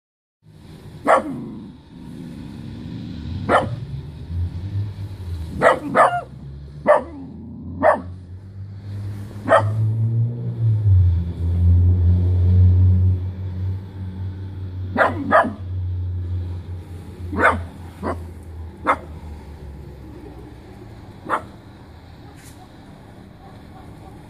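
Miniature dachshund barking: about a dozen single sharp barks at irregular gaps, some in quick pairs, with long pauses late on. A low rumble builds and fades under the middle stretch.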